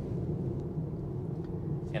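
Steady low road and tyre rumble inside the cabin of a 2022 Tesla Model 3 rear-wheel-drive electric car driving at about 45 mph, with the electric motor almost silent while cruising.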